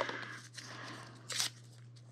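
Alcohol prep pad packet being torn open by hand: soft rustling of the paper-foil wrapper, with one short, sharp tear about one and a half seconds in.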